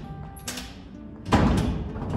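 A gate being shut: a knock about half a second in, then a louder thud as it closes about a second and a half in, over background music.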